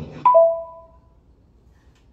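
A two-note chime, a higher note followed quickly by a lower one, like a ding-dong, both fading out within about a second.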